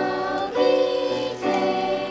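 A small school choir singing in harmony with piano accompaniment, the held chords moving to new notes every half second or so, with sharp 's' sounds on the consonants.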